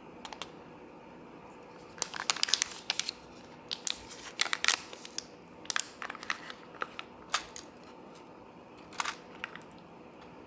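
Foil soup-base packet of a self-heating hotpot crinkling as it is torn open and squeezed, in clusters of sharp crackles that are busiest in the first half. Scattered crinkles follow as the spicy paste is pulled out of the packet.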